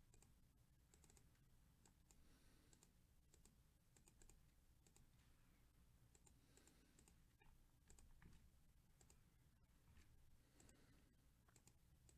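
Faint, irregular clicks of a computer mouse and keyboard over near-silent room tone.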